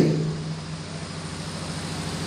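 Steady low hum and hiss of background room noise picked up by an open microphone, with the last spoken word fading out at the very start.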